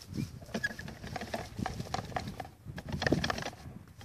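A hand shaking and handling a model plane's fuel tank after flights: irregular light knocks and rustles, with the little petrol left inside sloshing. It sounds almost empty.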